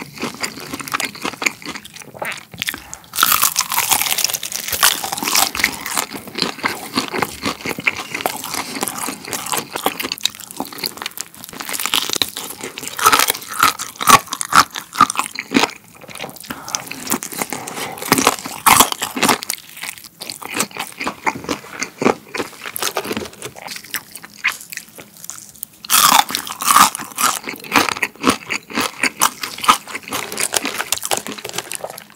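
Close-miked crunching and chewing of crispy, air-fried fried chicken dusted with seasoning powder, crackling bites and chews throughout. Louder bunches of crunches come a few seconds in, around the middle and again near the end.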